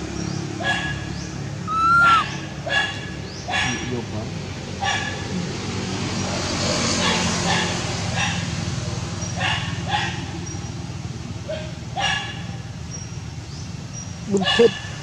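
Baby macaque giving short, high-pitched cries every second or two, the calls of an infant separated from its mother.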